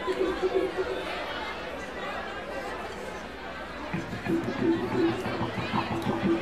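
Indistinct crowd chatter in a music venue between songs, quieter than the playing around it. About four seconds in, a steady held note and low thumps come back from the stage as the band starts up again.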